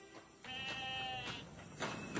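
A sheep bleats once, a single call of under a second starting about half a second in. Near the end a horse's hooves begin clopping on stone.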